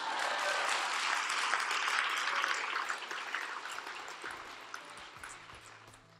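A large seated audience applauding. The clapping is strongest in the first two or three seconds, then thins out and dies away near the end.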